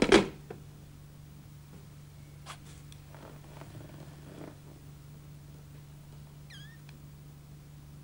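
Telephone handset put down onto its cradle with a loud clatter right at the start, followed by a few faint clicks over a steady low hum. A brief high chirp comes near the end.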